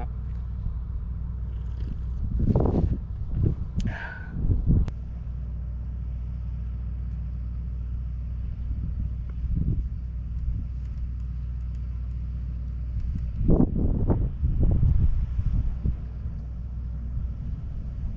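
Wind rumbling on the camera's microphone at an exposed mountain summit, steady and low, with louder gusts at about two to five seconds in and again near the three-quarter mark.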